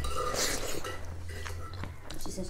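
Eating by hand from a metal plate of rice and nettle soup: mouth and chewing sounds with faint clinks of the plate, a brief rush of noise about half a second in, and a low steady hum underneath.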